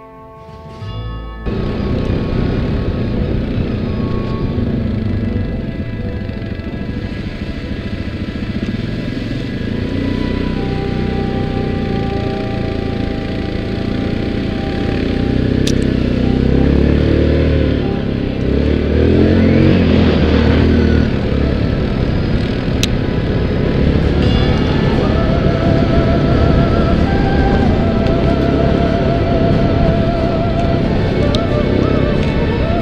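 ATV engine running under load on a moving quad, with rough wind and trail noise on the onboard camera. It cuts in abruptly about a second and a half in and stays loud.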